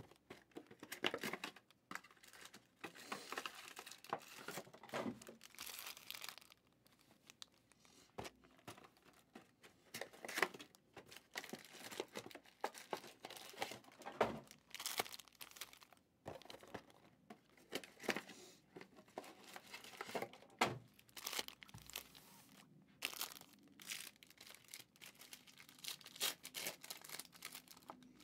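Foil trading-card packs and their box wrapping crinkling and tearing as they are handled, in irregular short rustles with small knocks as packs are set down.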